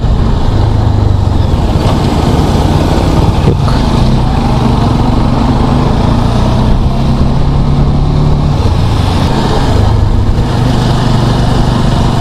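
Motorcycle engine running steadily under way, with wind rushing over the helmet-mounted microphone. The engine note shifts a little as the bike moves through traffic.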